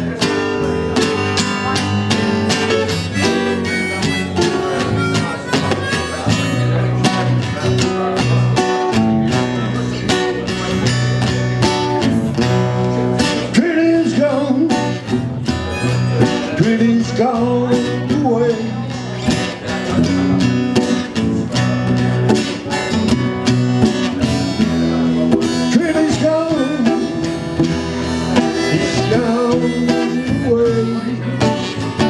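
Several acoustic guitars strumming an instrumental tune together, played live.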